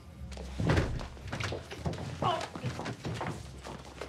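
A heavy thud about two-thirds of a second in, then a few softer bumps, over a low, steady music drone.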